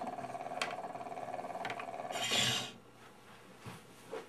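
Steel gramophone needle in an electric pick-up riding on a spinning vinyl stroboscope disc, a steady rasping surface hiss. A short louder scrape comes about two seconds in as the pick-up is lifted off the disc, and the sound stops.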